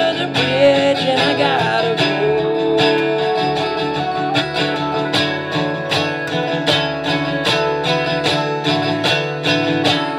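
Instrumental break of a band song: acoustic guitar strumming a steady beat over upright bass, with a woodwind playing a gliding lead line that settles into a long held note and drops back after about four seconds.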